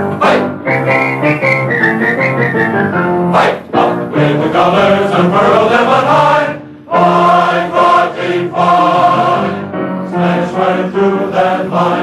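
Men's glee club performing a college fight song on an old 45 record: for the first few seconds the melody is whistled over the choir's sustained chords, then the men sing together in harmony, a passage not usually sung.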